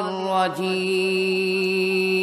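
A man's voice chanting an Arabic sermon invocation into a microphone, sliding down briefly about half a second in and then holding one long, steady note.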